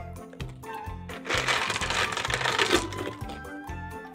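Many small plastic balls and plastic eggs clattering as they are tipped out of a clear plastic jar onto a carpet, a dense rattle lasting about a second and a half in the middle, over background music.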